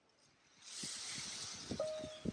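Tesla Model X liftgate chime: one short, steady beep near the end, sounding after the liftgate button has been held for about three seconds, the signal that the new opening height is saved. Under it is a faint steady hiss with a few light ticks.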